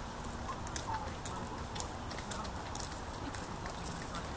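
Faint outdoor background: a steady low rumble with scattered faint clicks, and a brief faint chirp about a second in.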